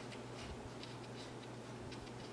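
Bristle brush laying oil paint on a canvas: a series of short, soft scratchy strokes as dark paint is dabbed in for rocks. A steady low hum sits underneath.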